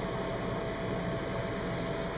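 Steady background hum and hiss with a faint constant high tone, and no distinct event.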